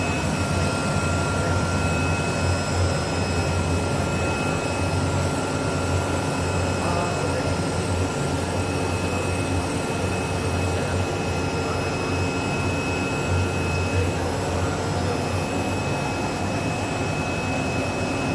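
Oscillating knife CNC cutting machine running as it works along a drawn line: a steady mechanical noise with a low hum and a faint, steady high whine.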